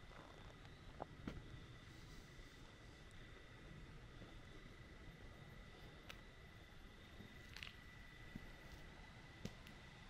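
Near silence: faint outdoor night ambience with a thin, steady high whine and a few scattered soft clicks.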